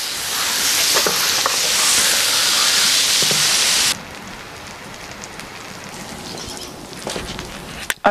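Diced bacon (lardons) sizzling and frying in its own fat on the hot steel plate of a wood-fired brasero-plancha. The sizzle is loud at first, then drops suddenly to a softer sizzle about four seconds in.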